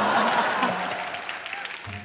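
Studio audience laughing and applauding, loudest at the start and fading away over about two seconds.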